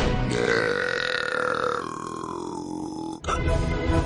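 A boy's long drawn-out burp lasting about three seconds, its pitch sliding down toward the end before it cuts off suddenly.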